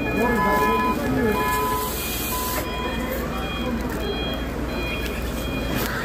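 Hyundai forklift's warning beeper sounding in short repeated beeps as the forklift manoeuvres.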